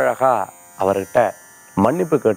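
A man speaking in short phrases, with brief pauses between them.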